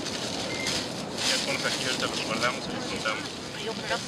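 Faint, indistinct talking over a steady rushing background noise.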